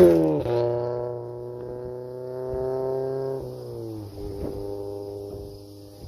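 A car speeds past at the very start, loudest there, its engine note dropping as it goes by; then music with held, plucked-string notes.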